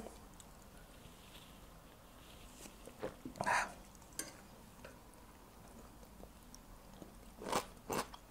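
Faint mouth and table sounds of a man downing a shot of vodka: a swallow and a short breath out about three and a half seconds in, and the small shot glass set down on the table, with quiet between.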